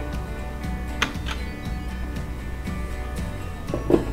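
Background music, with a sharp click about a second in and a short clunk near the end as the electric pressure cooker's lid is turned and lifted off.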